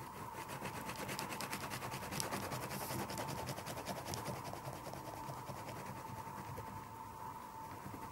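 An oil pastel stick rubbed rapidly back and forth on paper in quick, even strokes, about eight a second, easing off after about five seconds.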